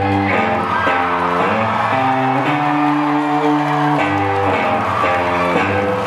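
Live rock band playing, led by guitar, with held chords changing every second or two at a steady loud level.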